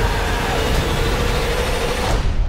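A loud, steady, heavy mechanical rumble with a held droning tone, a film sound effect.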